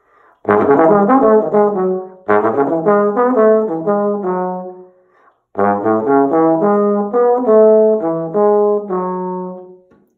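Bass trombone with independent F and G-flat valves playing a fast bebop line in the low register, in three runs of quick notes; the last run is the longest. The C-sharp is taken in first position with the second valve down, so the slide only moves between nearby positions.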